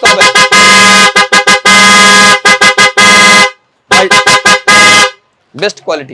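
Loud motorcycle electric horn sounded by hand: one steady, buzzy tone given as a run of quick beeps, then a long blast of nearly two seconds and a shorter one, a brief pause, more quick beeps and a last short blast.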